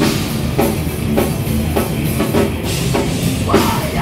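Live rock band playing loud: electric guitars over a drum kit, with the drums striking a steady beat a little under twice a second.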